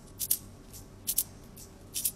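Crisp rustling and crinkling of a printed costume and its packaging as it is unfolded and handled: a few short, sharp crackles, several in quick pairs.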